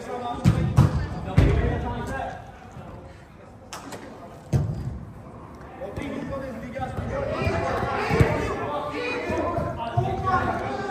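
A football being kicked and thudding off the turf and the pitch boards, several sharp knocks in the first second and a half and more at about four and a half and eight seconds in. Players shout to each other between the kicks, with the echo of a large hall.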